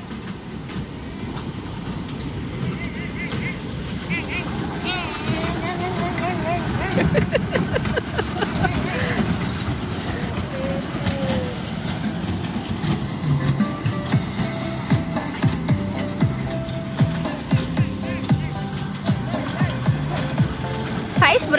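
A steady mechanical hum runs throughout, with a child's high voice now and then in the first half. A simple tune of held notes plays over it in the second half.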